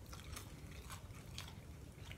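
Faint chewing of Sweet Heat Skittles fruit chews, with a few soft clicks of the mouth about every half second.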